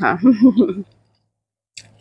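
A woman's voice saying a drawn-out word in the first second. Then quiet, broken near the end by one short, faint mouth click as she puts food to her mouth.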